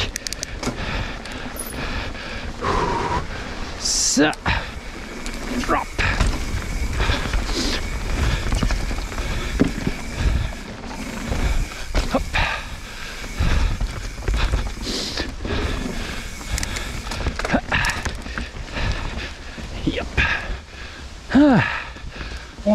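Mountain bike ridden fast downhill, heard from the bike-mounted camera: tyres rumbling over wooden boardwalk slats and then a dirt trail, with frequent sharp knocks and rattles from the bike over the bumps.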